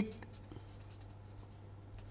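Marker pen writing a word on paper: faint, scattered scratching strokes over a steady low hum.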